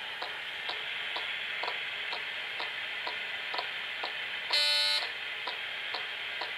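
Ghost-box radio scanning through stations: a steady static hiss with a short click about twice a second as it jumps. About four and a half seconds in, a louder half-second burst of pitched radio sound cuts through the static.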